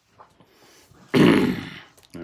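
A man clearing his throat once, a loud, brief, rough burst about a second in.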